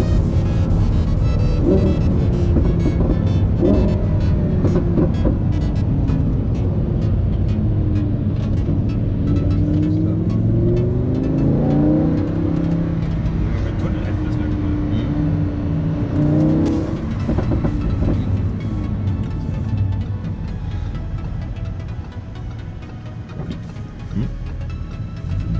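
A car driving, heard from inside the cabin, with engine and road noise, mixed with background music.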